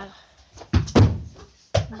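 Two dull thumps close together a little under a second in, amid a child's voice.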